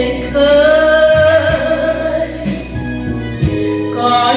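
A woman singing a Vietnamese song into a handheld microphone over instrumental accompaniment with a steady bass line, holding one long note through the first half before moving on to shorter phrases.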